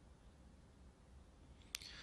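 Near silence: faint room tone, broken by a single short click near the end.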